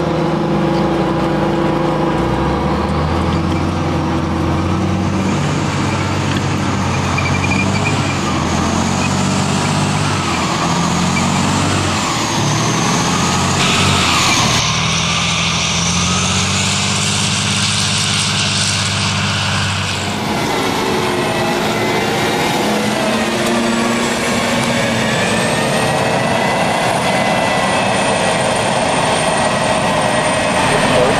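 US Army M113 tracked armoured carriers driving, their V6 diesel engines running with a high wavering whine from the running gear. After a cut about two thirds in, it changes to the rising and falling whine of an M1A1 Abrams's gas turbine engine.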